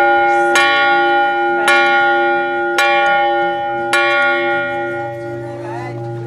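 Large hanging temple bell struck four times, about once a second, each stroke ringing on over the next. After the last stroke the ringing slowly dies away.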